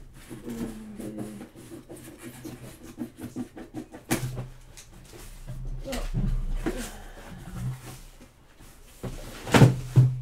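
A delivery package being opened and its contents pulled out by hand: rustling, scraping and small knocks, with one loud knock near the end.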